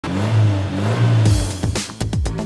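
TV show intro sound design: a car engine sound effect running steadily under electronic music, then a whoosh about 1.3 s in and falling swept hits near the end.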